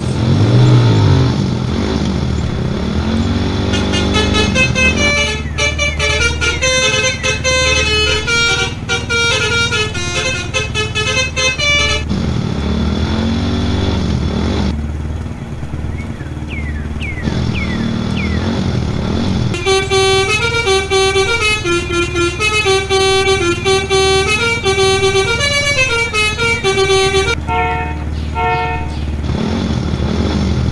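A toy RC pickup's sound module playing a multi-tone telolet horn tune in two long passages, over a steady low engine hum. Between the passages the electric drive motor whines up and down as the truck moves.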